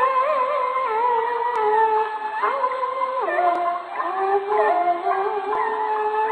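Peking opera music from an old record: a high melodic line held in long notes with quick wavering ornamental turns. The sound is thin, with no treble.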